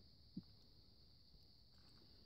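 Near silence: faint background hiss, with one brief soft blip about half a second in.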